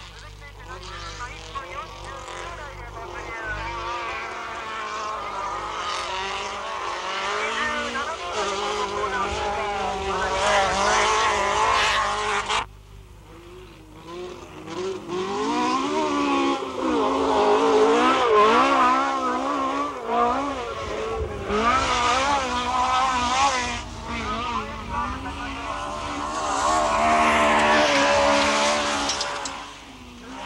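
Competition car engine in a dirt-trial run, revving hard and rising and falling in pitch with each gear change and lift. The sound cuts off abruptly about twelve seconds in and comes back, louder near the end.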